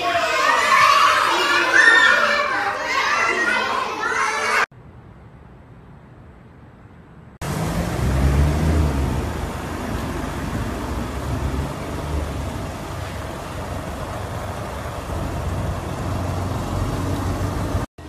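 A room of young children talking and calling out together for the first few seconds. After a short quieter stretch there is steady street noise: wind on the microphone and a low rumble of traffic and engines, heard while riding along a city road.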